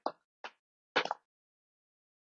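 A person's voice: three brief clipped vocal sounds, hesitant syllables or mouth sounds, in the first second or so.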